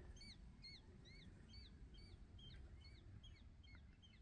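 A faint bird calling in a quick series of short, rising-then-falling chirps, about three a second, over a soft low background hiss.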